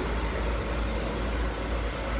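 Road traffic on a busy street, with cars and a double-decker bus close by: a steady low rumble.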